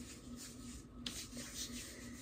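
Hands rubbing oil into the skin of a forearm: a few soft brushing strokes.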